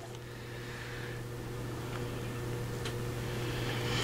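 Steady low machine hum with a faint hiss, slowly growing louder, and a couple of faint ticks.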